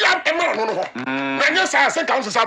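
A man talking, holding one long drawn-out vowel at a steady pitch about a second in.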